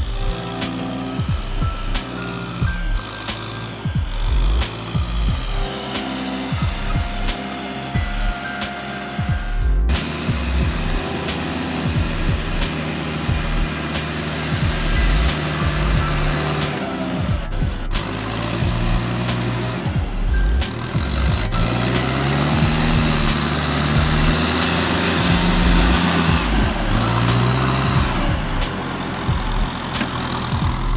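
Background music over a Kubota tractor's diesel engine working through deep mud, the engine's pitch rising and falling in the later part.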